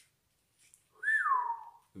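A single whistled note about a second in: a brief rise, then a long glide downward, lasting under a second.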